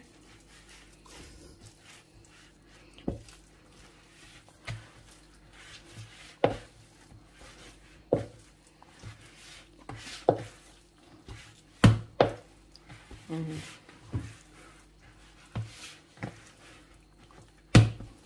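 Wooden spoon mixing a thick onion-and-flour batter in a bowl, knocking against the bowl in irregular strokes about every one to two seconds, with softer squelching scrapes between.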